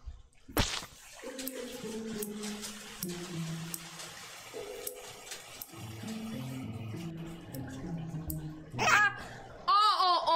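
Light background music with notes that step from one pitch to another, over a steady hiss. A fork clinks now and then against a metal frying pan as vegetables are stirred, with one sharp knock near the start.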